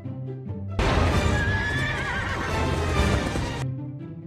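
A horse whinnying from the film's soundtrack, a wavering cry over a loud rush of noise. It starts suddenly about a second in and cuts off just before the end, over background music.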